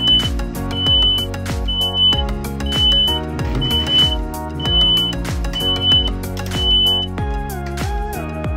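Background music with a steady beat, with a high-pitched electronic beep repeating about once a second, eight times, then stopping about a second before the end: a reversing-alarm sound effect for a tractor backing up.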